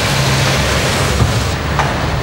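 Steady rushing noise of street traffic, with a low engine hum through the first part.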